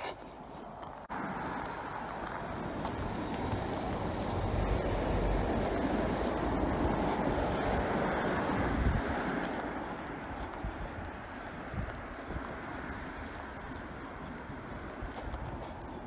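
A car passing on the street: tyre and engine noise that swells, is loudest about five to nine seconds in, then fades.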